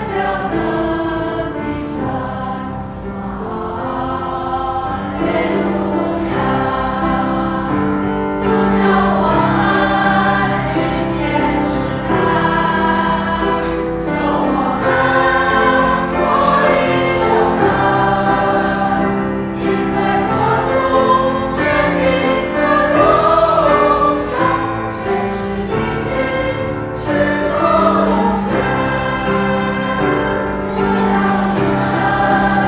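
Mixed choir of men and women singing a hymn in parts, with held chords that change every second or so.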